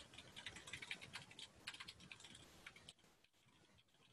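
Computer keyboard typing in quick, faint keystrokes that stop about three seconds in.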